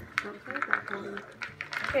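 Wooden spoon stirring thick chocolate chip cookie dough in a plastic mixing bowl, with a few short knocks and scrapes, under faint children's voices.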